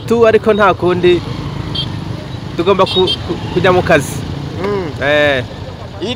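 A man talking in several short stretches over the steady low hum of a motorcycle engine running at idle close by.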